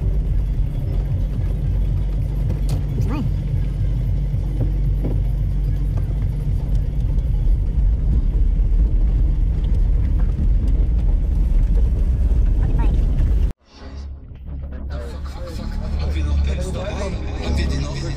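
A car being driven: a steady low drone of engine and road noise, which cuts off abruptly about thirteen seconds in and gives way to quieter, more varied sound.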